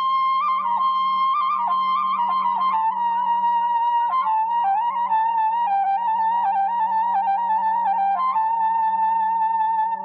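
Armenian folk melody played on a high woodwind over a steady low drone. The melody holds long notes decorated with quick turns and trills.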